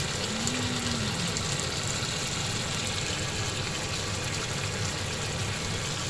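Chicken liver adobo sizzling and bubbling steadily in a frying pan as its soy-sauce liquid cooks down, over a steady low hum.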